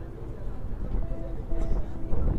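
Busy pedestrian street ambience: voices of passers-by over a steady low rumble, with faint music of short held notes in the background.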